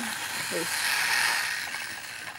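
A rustling, hissing handling noise, with no steady tone, that swells about a second in and fades toward the end, as things on a bed sheet are handled.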